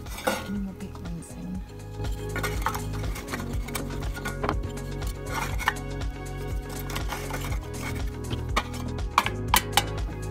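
Background music, over small wooden fuel blocks knocking against the metal fuel box of a Roccbox wood burner, with sharp metal clicks near the end as its hinged lid is shut.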